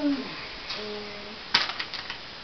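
A child's held sung note ends at the start, followed by a faint held hummed tone. About one and a half seconds in comes a brief crinkling rustle as a Christmas stocking and its contents are handled.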